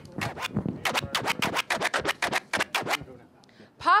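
Short percussive music sting: a rapid, even run of sharp hits, about seven a second, that stops about three seconds in.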